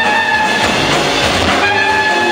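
Live jazz quintet playing: trumpet holding long high notes over bass, piano and drums. Around the middle the held notes break off briefly under a swell of cymbal wash, then the horn comes back in.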